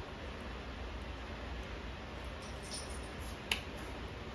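Steady low room hum with faint small handling clicks, and one sharper click about three and a half seconds in.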